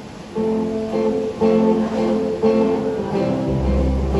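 Acoustic guitar strumming chords as a song intro, starting about half a second in with a new chord roughly every half second. A deep steady low sound joins near the end.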